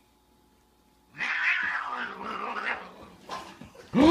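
A domestic cat giving a rough, aggressive yowl in a standoff with another cat. The cry starts suddenly about a second in and fades away over about two seconds.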